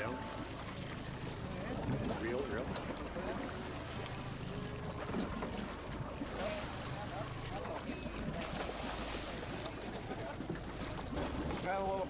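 Indistinct voices over a steady low rumble from the boat, with wind on the microphone.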